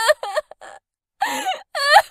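A cartoon character crying in a high-pitched voice. A few quick sobs come first, then a pause of about half a second, then a longer wavering wail.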